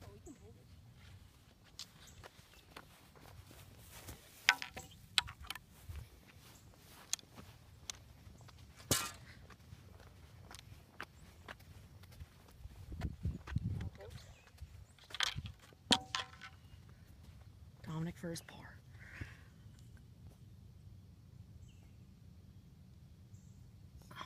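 Occasional sharp clicks and taps from putting on a golf green, with a brief low rumble about 13 seconds in and a short bit of voice about 18 seconds in.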